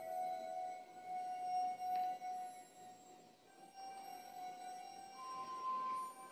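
Quiet, eerie film-score music: slow held electronic tones, one note stepping slightly in pitch, with a higher note joining about five seconds in.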